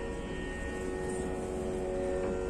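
A steady, sustained musical drone: several held pitches, each with its overtones, holding unchanged.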